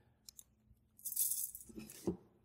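Metal tape measure blade being pulled out of its case: a couple of light clicks, then about a second of rattling, hissing slide as the blade runs out.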